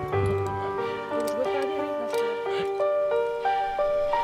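Music: a melody of short, stepped notes.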